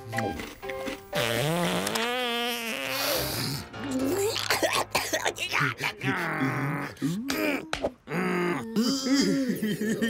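Wordless cartoon character voices: groans, a long wavering wail and gibberish vocal noises, over background music, with a comic fart sound effect.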